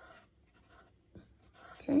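Felt-tip marker drawing on paper: a few short, soft scratches as the tip dots spots onto the drawing.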